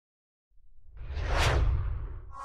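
Whoosh sound effect of a logo intro. A deep rumble starts about half a second in, and a swoosh swells over it, peaks near the middle and fades away.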